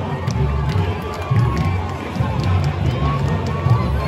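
A samba school bateria playing samba: the bass drums pulse steadily under sharp, repeated snare and tamborim strokes. Crowd voices cheer and sing along over the drumming.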